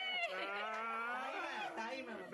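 Women's voices letting out a long, drawn-out teasing "oooh", held for about a second and a half before breaking into chatter.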